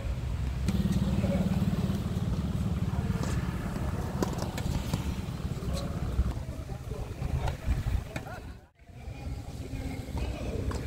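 Tennis ball struck back and forth by rackets in a doubles rally: a few sharp hits spaced a second or so apart, over a low steady rumble and background voices.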